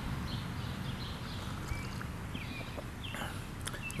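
Quiet outdoor ambience: a low steady rumble with a few faint, brief bird chirps.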